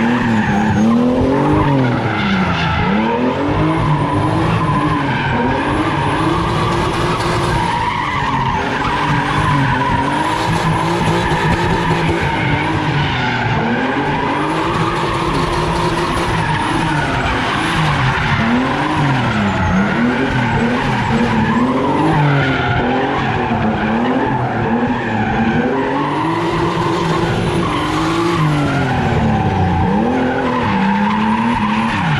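Turbocharged BMW 328's straight-six engine revving up and down over and over as the car drifts in circles, its rear tyres squealing and scrubbing continuously on the asphalt.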